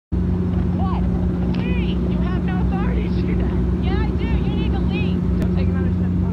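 Steady low drone of an airplane cabin in flight, with a person's voice talking over it.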